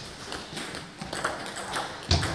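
Table tennis ball being served and returned: a few sharp clicks of the ball off the bats and the table, the clearest about a second in and near the end.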